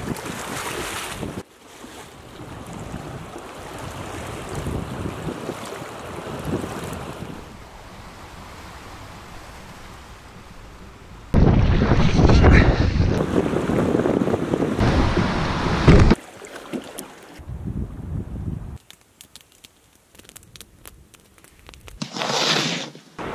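Wind buffeting the microphone and choppy waves splashing against a canoe being paddled on rough open water, loudest for about five seconds in the middle. Around it, quieter stretches of moving water and wind, and a few faint clicks near the end.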